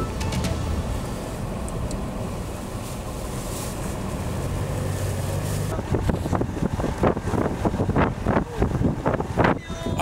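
Heavy snow-clearing vehicle engine running steadily under a hiss of blizzard wind. About six seconds in, the sound turns choppy and irregular, with uneven bursts.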